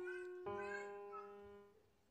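Quiet background music: sustained instrument notes that ring and fade away, with a fresh note struck about half a second in, dying out near the end.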